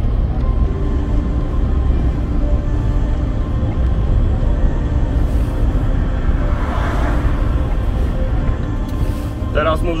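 Steady in-cabin drone of a BMW E60's M57D25 2.5-litre straight-six diesel cruising at about 2,150 rpm with road noise, the engine held above 2,000 rpm to keep a forced DPF regeneration going. Music plays over it.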